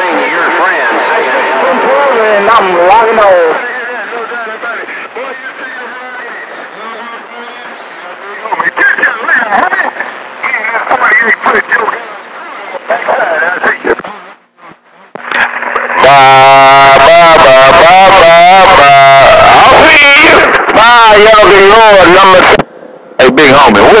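Voices coming over a CB radio channel, thin and hard to make out at first. About 16 seconds in, a much louder transmission breaks in, so strong that it distorts.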